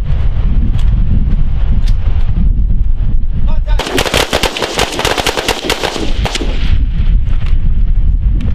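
Rifles on a firing line shooting rapidly: a dense run of sharp gunshots lasting about two and a half seconds, starting a little before halfway. Before and after it, wind buffets the microphone with a low rumble.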